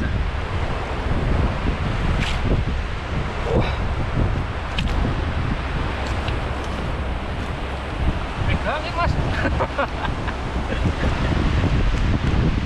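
Wind buffeting the microphone over the steady rush of a shallow river, with a few faint voice-like sounds about nine seconds in.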